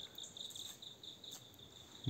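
Faint, steady, high-pitched chirring of insects, slightly pulsing.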